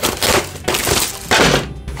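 Plastic shrink-wrap being torn and pulled off a cardboard model-kit box, crackling in a few loud bursts.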